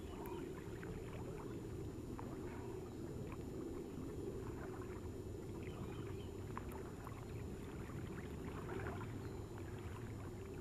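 Wind buffeting the microphone outdoors by open water, a steady low noise with faint, scattered small sounds above it.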